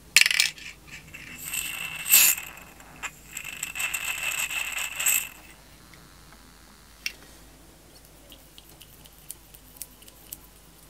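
A thin piece of metal knocking and scraping on a hard surface, ringing with a high metallic tone. Two sharp knocks come, one at the start and one about two seconds in, then a few seconds of uneven scraping that stops about five seconds in. A single light tick follows about two seconds later.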